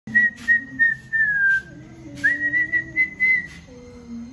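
A person whistling at a dog: three short whistles, then a longer one that falls slightly, then a long held whistle that starts with a quick upward slide about two seconds in.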